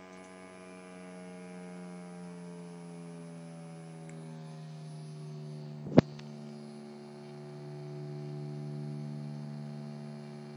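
Guitar string sustained by an EBow, its steady tone and overtones gliding slowly down in pitch as a stepper motor turns the tuning peg down to D, about 73 Hz; the pitch settles about halfway through. A single sharp knock, the loudest sound, comes about six seconds in.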